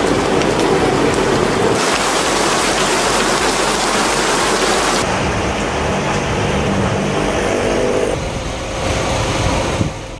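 Heavy rain pouring down, a dense hiss that changes abruptly about two and five seconds in where the footage is spliced. From about five seconds a low rumble, fitting traffic on a wet road, sits underneath the rain.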